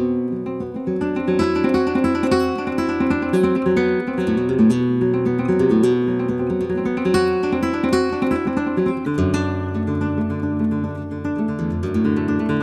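Flamenco guitar playing quick plucked and strummed figures over held low notes. The low note moves to a new pitch about nine seconds in.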